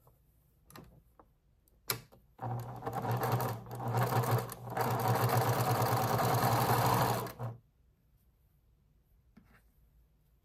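Electric sewing machine stitching a seam through cotton patchwork pieces: a click, then a run of about five seconds at an even rapid speed, easing briefly twice before it stops.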